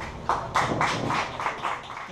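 Scattered applause: a handful of sharp handclaps in quick, uneven succession, thinning out near the end.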